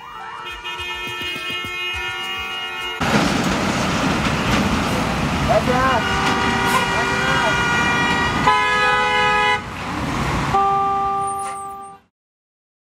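Car horns honking in gridlocked traffic: long held blasts of different pitches, one after another and sometimes overlapping, over the dense noise of idling and crawling vehicles that grows louder about three seconds in.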